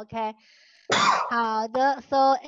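A person clears their throat once, about a second in, with short spoken syllables just before and after.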